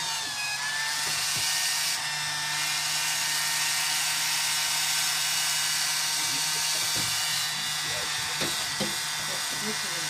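Small electric water pump running steadily with a low hum and a hiss, recirculating hot water into a frozen sink drain pipe to thaw it. A few soft knocks come in the second half.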